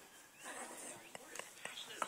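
Faint whispering, with a few light clicks in the second half.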